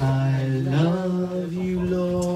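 A cappella worship singing: a voice holds a long sung note that steps up in pitch just under a second in and is held.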